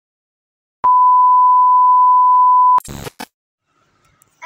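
A single steady electronic beep, a pure tone of about 1 kHz lasting about two seconds, that cuts off abruptly. Two short bursts of crackly noise follow.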